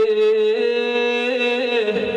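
A man singing one long held note of a Gujarati devotional folk chant, rich in overtones. The pitch steps up slightly about halfway through, and the note fades near the end.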